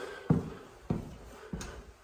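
Footsteps going down a staircase in sneakers: three steps about half a second apart, each a short thud.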